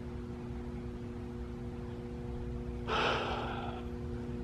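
A person's single breathy exhale, like a sigh, about three seconds in, lasting about a second. A steady low rumble and faint hum sit underneath throughout.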